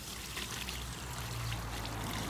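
Water pouring from a plastic bucket and splashing onto a concrete sidewalk, a steady pour that grows slowly louder.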